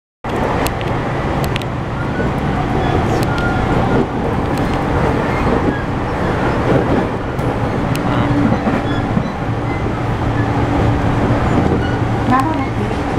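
Interior running noise of an E231-series commuter train car pulling away from a station: a steady low rumble and hum from the motors and running gear, with scattered clicks and knocks from the wheels and car body.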